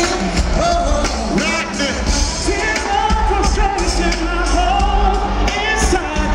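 Live R&B band performance: male voices singing over keyboards and a heavy, steady bass.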